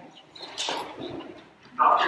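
A short rustling noise, then a man's voice starts up loudly near the end.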